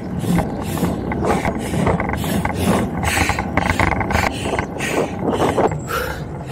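Wind and road noise on a handlebar-mounted camera during a bike ride, pulsing evenly about twice a second.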